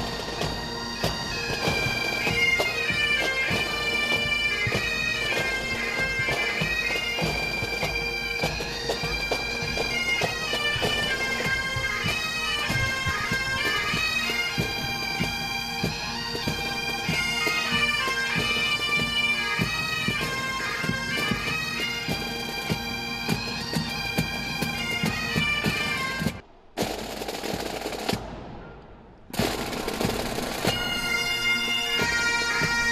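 Scottish Highland bagpipes playing a tune over their steady drones, with rapid sharp strikes underneath. The music cuts out briefly a few seconds before the end, then fades away and drops out for about a second before it comes back.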